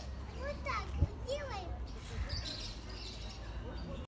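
Children's voices, a few short high calls and chatter, over a steady low rumble, with a single knock about a second in.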